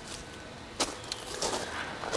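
Footsteps crunching softly on gravel while walking with a handheld camera, with one sharp click a little before halfway through.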